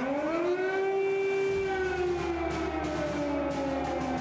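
Air-raid siren wailing over a city as an air-raid alert: the tone rises at the start, holds, then slowly falls.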